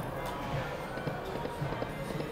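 Lock It Link Cats, Hats & More Bats video slot machine spinning its reels, with the machine's game music playing.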